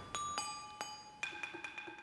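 Struck percussion with bell-like ringing tones. A few separate strikes in the first second and a half each leave high notes hanging, then lighter, quicker taps bring in a higher set of ringing tones.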